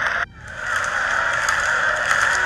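A crowd clapping: dense, steady applause that breaks off sharply about a quarter second in, then builds back up.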